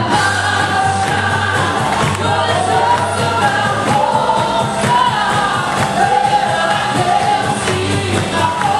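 A woman singing a gospel song live through a microphone over instrumental accompaniment, with other voices joining in, amplified in a large hall.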